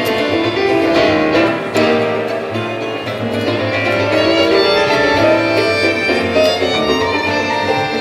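Live performance of a rumba by a small ensemble of two violins, double bass and grand piano. A violin carries the melody over a low bass line.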